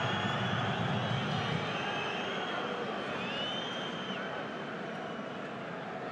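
Football stadium crowd noise: a steady wash of many voices, with several shrill whistles from fans rising and falling over it in the first few seconds.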